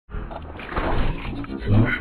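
Heavily distorted, effects-processed logo soundtrack: a harsh, dense sound that swells about halfway through and ends with a stronger pitched, voice-like tone.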